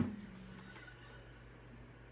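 A single knock on the body of an Esteban acoustic-electric guitar as it is handled, with a short low ring that fades within a second. After it, only faint room hum.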